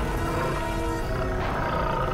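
A tiger roaring, a low rumbling growl heard with background music.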